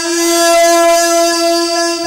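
A qari's voice holding one long, steady high note in a recitation of the Quran.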